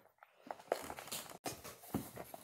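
Faint, irregular soft taps and rustles of hands squeezing and patting a ball of homemade cornstarch play dough, with a clear plastic container being handled.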